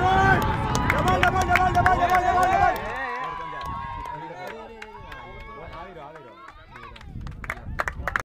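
Several people shouting long, drawn-out cries, loud for nearly three seconds. Fainter calls follow, with a few sharp clicks near the end.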